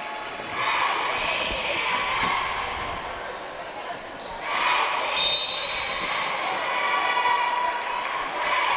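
Basketball game sounds in a gym: a basketball bouncing on the hardwood court amid the mixed voices of players, benches and spectators. The crowd noise swells about half a second in and again about four and a half seconds in.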